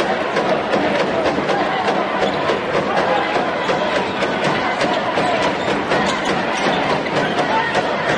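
Arena crowd murmur during live basketball play, with a basketball being dribbled on a hardwood court: a run of irregular short knocks over the crowd noise.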